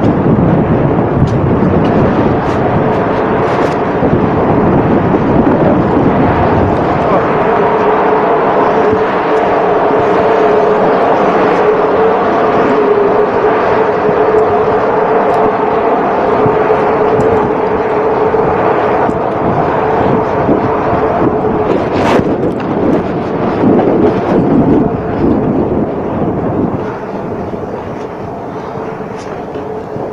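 Loud steady drone of shipboard machinery with a held humming tone, under a rumble of clothing rubbing the body-worn microphone in the first seconds. The drone fades to a lower level near the end.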